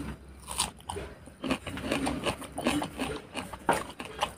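Close-up biting and chewing of raw red onion: an irregular run of crisp, wet crunches.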